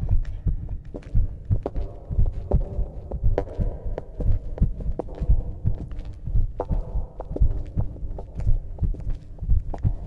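A processed, bass-heavy cartoon soundtrack: a steady run of deep thumps, about two to three a second, with sharp clicks and a faint hum over them.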